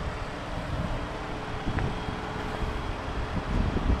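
Wind buffeting the microphone in uneven low gusts, over a faint steady hum.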